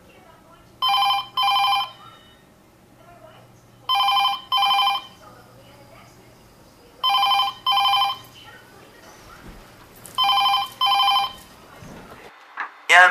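Telephone ringing with a double-ring cadence: four pairs of short rings, each pair about three seconds after the last.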